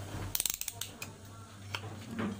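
A quick run of small, sharp mechanical clicks, ratchet-like, about a third of a second in, followed by a few single clicks, over a steady low hum.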